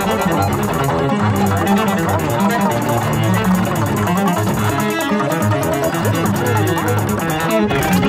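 Contemporary music for cello and electronics: the cello playing low notes inside a dense mixed texture with a fast, even pulse.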